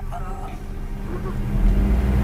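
Street noise dominated by a low rumble, like a vehicle's engine, growing louder about a second and a half in.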